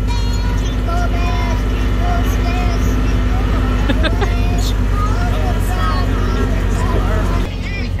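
Children singing in wavering voices over a steady low engine rumble from the moving wagon ride. The rumble drops away abruptly near the end.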